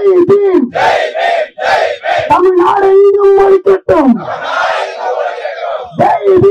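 Protest slogan-chanting: a leader shouts short slogan syllables into a microphone, holds one long drawn-out call about two seconds in, and the crowd shouts its response together near the end.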